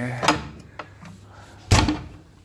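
Glass door of a small minibar fridge pushed shut with a sharp thud about three-quarters of the way in, after a lighter click near the start.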